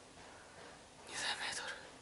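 A man's breathy whisper, under a second long, about a second in, with no voiced tone in it; otherwise low room tone.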